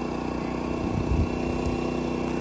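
DJI Agras T32 agricultural drone flying low while spreading granular fertilizer, its rotors giving a steady, even hum.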